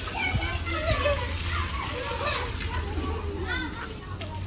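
Children shouting and chattering at play, several high voices overlapping, with a steady low hum underneath.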